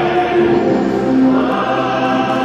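Choral music: a choir singing long held chords, the chord changing about half a second in and again just past a second.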